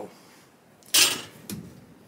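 A steel combination square set down on the wooden workbench: one short, sharp clack about a second in, followed by a fainter knock.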